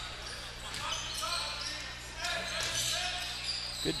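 A basketball dribbled on a hardwood court, under the chatter of a crowd in the gym.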